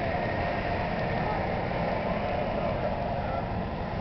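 Steady rumble and rush aboard a moving Star Ferry on the open deck: the ferry's engine, wind and water.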